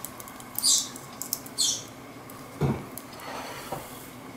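Blue masked lovebird bathing in a bowl of water: a few short splashes as it dips and flutters its wings, with a duller thump about two and a half seconds in.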